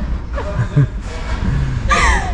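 A woman laughing softly in short bursts over a steady low room hum.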